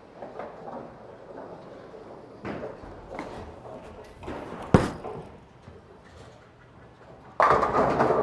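A bowling ball is thrown. About halfway through it lands on the lane with one sharp thud and rolls on quietly. Near the end it hits the pins with a sudden loud crash and clatter.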